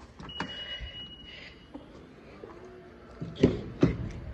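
Honda CR-V power tailgate operating: a single steady electronic beep lasting about a second, then a faint motor whir, with two sharp knocks near the end.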